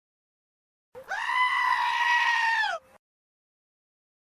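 A single long, high-pitched cry, held steady for nearly two seconds and dropping in pitch at the end.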